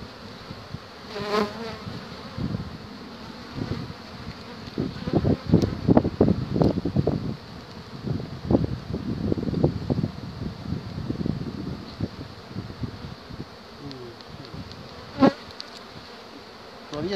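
Honey bees buzzing around an open hive, the buzz swelling and fading repeatedly as bees move about. A single sharp click comes near the end.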